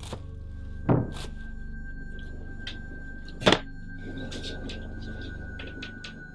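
Low, droning film score, with a high steady tone joining about a second in, under a chef's knife chopping lettuce on a plastic cutting board: scattered sharp chops and two much louder thuds, about a second in and at the middle.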